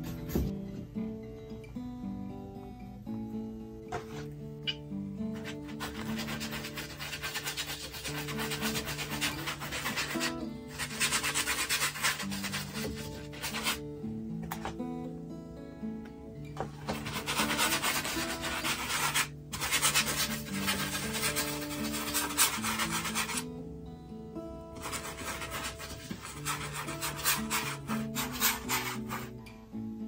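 Large paintbrush scrubbing acrylic paint onto a primed canvas in rapid strokes, in spells of several seconds with short pauses, over soft background music.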